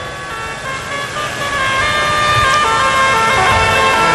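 Sustained instrumental chords with a reedy, organ-like tone: several notes held together, moving to new pitches a few times and growing slightly louder.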